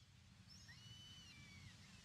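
Near silence: a faint low rumble, with a few faint, high gliding whistles about half a second in.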